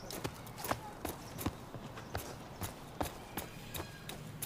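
Footsteps on a hard surface at a steady walking pace, about two to three crisp steps a second, some heel-and-toe pairs.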